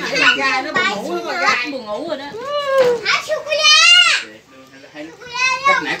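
Young children's voices chattering and calling out, with a long high-pitched cry that breaks off about four seconds in.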